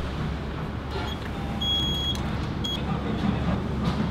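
Electronic beeps from a ramen shop's ticket vending machine as its buttons are pressed: a short beep, a longer held beep, then another short beep. A steady low rumble runs underneath.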